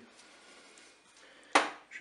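Faint room hiss, then a single sharp knock about one and a half seconds in that dies away quickly.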